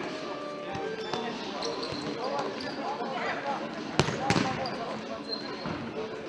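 Indoor futsal play on a sports-hall floor: the ball struck and bouncing, with short squeaks and players' voices throughout. Two sharp, loud hits come about four seconds in.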